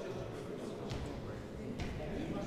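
Indistinct voices of people talking in the background, with two light clicks, one about a second in and one near the end.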